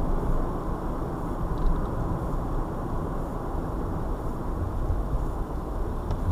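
Steady low hum of a car driving at about 25 mph, heard from inside the cabin: tyre and engine noise with no gear changes or other distinct events.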